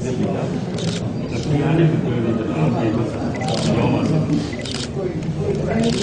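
Several people talking at once, with a handful of camera shutter clicks scattered through, as if from press photographers.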